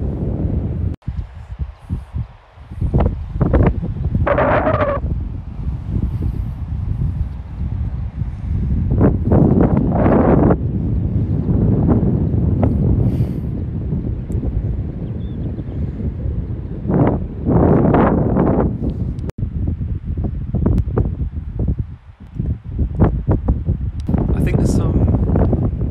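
Wind buffeting the microphone: a steady rumble with louder gusts about three to five, nine to ten and seventeen to eighteen seconds in.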